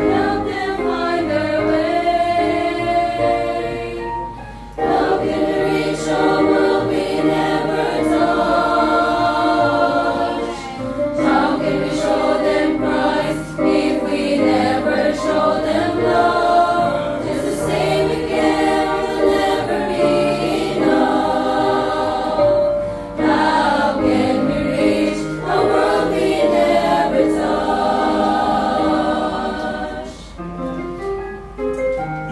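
Women's choir singing a hymn in three-part SSA harmony over a recorded accompaniment track, in long sustained phrases with brief breaths between them.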